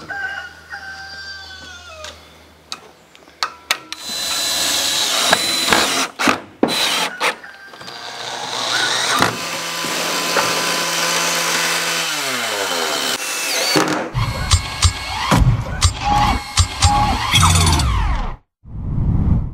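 Roofing work sounds: a power tool runs for several seconds, then winds down with a falling pitch, followed by a run of sharp knocks.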